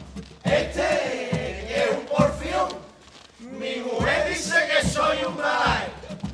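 Men of a carnival comparsa chorus singing out together in loud, shout-like phrases, with short breaks between them, about half a second in and again around three seconds in.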